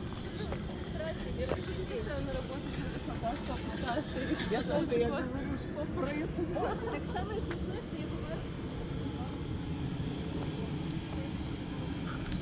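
Several people talking at a distance, their voices faint and clearest in the middle, over a steady low outdoor rumble. A short laugh comes near the end.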